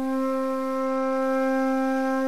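Background music: a flute-like wind instrument holds one long, steady, fairly low note.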